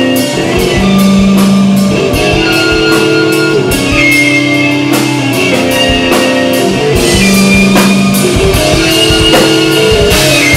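Rock band playing live: sustained guitar notes shifting every second or so over a steady drum-kit beat.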